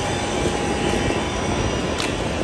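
Wind buffeting the phone's microphone, a steady gusty rumble with no speech over it.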